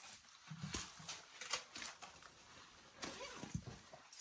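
Footsteps and scuffs of people walking over a rocky cave floor: a string of irregular light taps and clicks.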